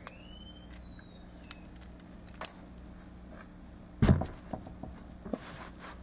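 Small plastic clicks and handling noise as the hinged panels of a small plastic Transformers toy are unlatched and flipped by hand, with a louder cluster of knocks and fumbling about four seconds in. A few short high chirps come right at the start.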